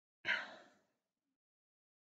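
A person sighing: one breath out that starts suddenly and fades away within about half a second.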